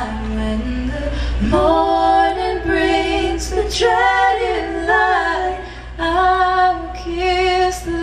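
Women's voices singing a slow lullaby duet in long, held phrases, with soft acoustic guitar accompaniment.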